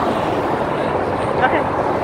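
Steady traffic noise from a nearby freeway, an even roar of passing vehicles with no single event standing out.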